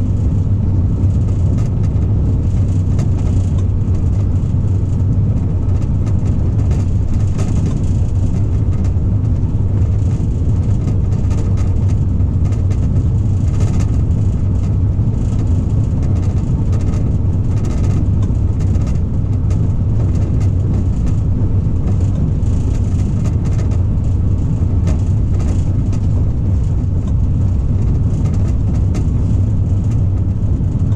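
Diesel-hydraulic engine of a DB class 294 shunting locomotive running with a steady low drone, heard from inside the cab, with scattered faint clicks from the wheels on the track.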